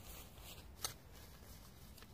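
Faint rustling of a DD tarp's fabric as it is handled, with one sharp click a little under a second in.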